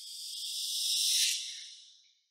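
A whoosh sound effect: an airy hiss that swells to a peak just past a second in, then fades away and drops into dead silence.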